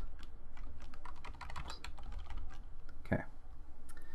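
Computer keyboard typing: a run of quick, uneven keystrokes, thicker in the first couple of seconds.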